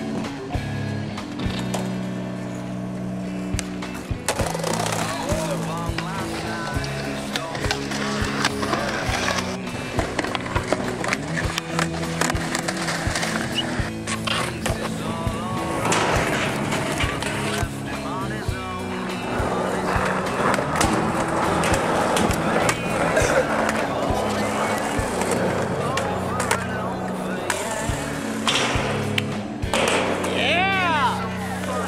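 A music track with vocals over skateboard sounds: wheels rolling on concrete and boards clacking and landing during tricks.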